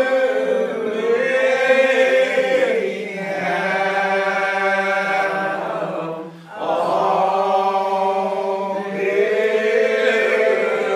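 Old Regular Baptist congregation singing a lined hymn unaccompanied, slow and drawn out with long held notes. The singing breaks briefly about six and a half seconds in, then the next phrase begins.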